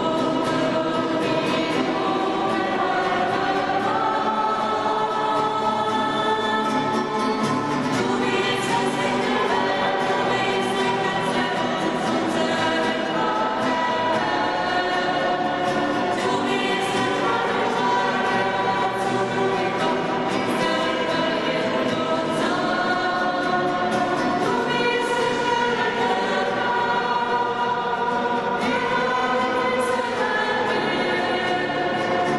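Several voices singing a slow worship song together with long held notes, accompanied by strummed acoustic guitars.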